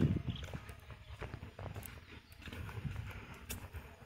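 Footsteps of a person walking up to and onto a pedestrian suspension bridge's deck of concrete slabs on steel strips, heard as irregular knocks and clicks.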